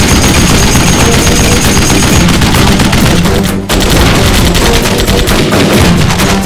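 Rapid, sustained bursts of belt-fed machine-gun fire, mixed with a film score underneath. The firing breaks off briefly about halfway through, then resumes.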